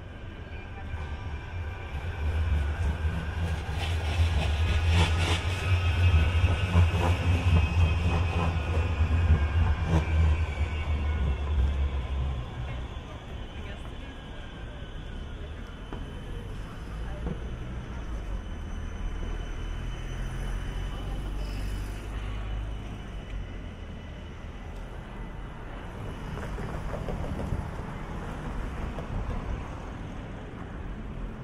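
A tram passing: a heavy low rumble with a high whine that glides slowly down in pitch, fading out about twelve seconds in. After that comes the steadier, quieter noise of street traffic.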